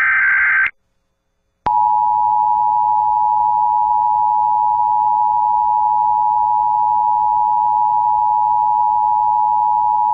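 Emergency Alert System test: a short burst of screeching digital data ends, and about a second later the two-tone EAS attention signal starts, a steady harsh dual tone held for about nine seconds before it cuts off suddenly.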